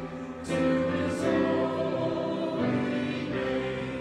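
Small mixed choir of men's and women's voices singing together, holding long notes; a new phrase comes in about half a second in.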